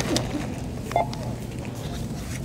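Self-checkout barcode scanner beeping as items are scanned: a short electronic beep at the start and another about a second in.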